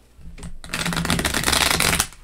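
A deck of cards being riffle-shuffled: a fast, dense fluttering of card edges about half a second in, running for over a second and stopping sharply as the two halves close.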